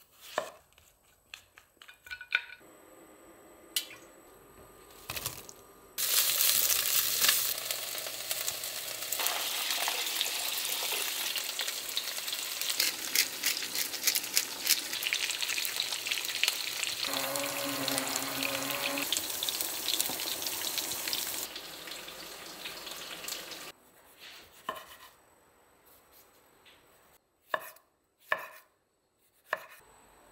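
A cleaver chopping kabocha squash on a wooden cutting board, a few sharp knocks. About six seconds in, onion and kabocha start cooking in a cast-iron pot, a loud steady sizzle full of small pops that lasts around seventeen seconds and cuts off suddenly. A few light taps follow near the end.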